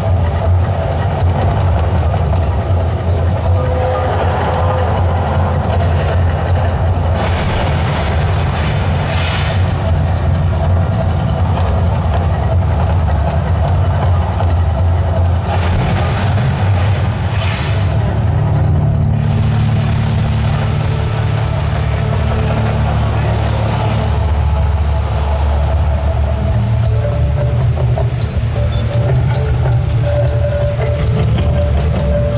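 Mirage volcano attraction erupting: a deep, steady rumble from the show's sound system, broken three times by a rushing hiss as gas fireballs flare up over the volcano.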